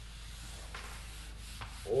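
Whiteboard marker rubbing across the board in a few short strokes as lines are drawn.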